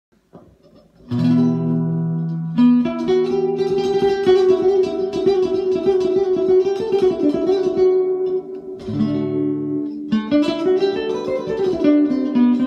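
Nylon-string classical guitar played solo with the fingers: a chord rung out with a held bass about a second in, then rapidly repeated plucked notes carrying a melody, and a second bass chord near nine seconds before the melody climbs.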